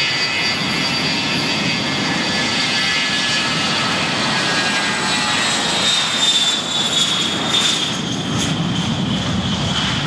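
Air Force One, a four-engine Boeing 707 (VC-137C) jet, taking off at full thrust: its turbofans give a loud rushing sound with a high whine that slides gradually lower in pitch through the second half as the plane rolls past and lifts off.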